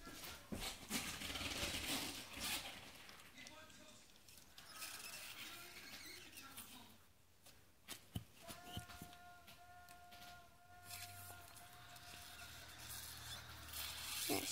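Faint rustling of a towel and gloved hands handling a newborn Yorkshire terrier puppy while a rubber bulb syringe is worked at its nose and mouth to suction fluid. A little past halfway, a thin steady whine-like tone holds for a couple of seconds.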